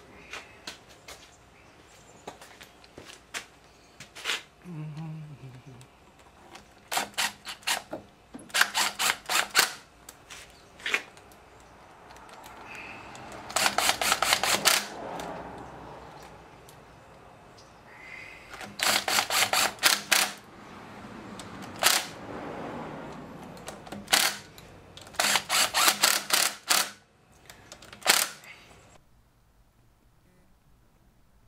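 Socket ratchet with an extension clicking in several quick runs with pauses between, as head bolts on a 15 hp Johnson outboard's powerhead are run down.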